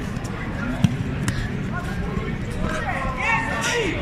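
A single sharp thud about a second in, a judoka's body hitting the tatami mat as a throw lands. The hall's background chatter carries on throughout, with raised voices in the second half.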